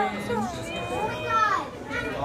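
Children's high-pitched voices, exclaiming and chattering without clear words, their pitch sliding up and down.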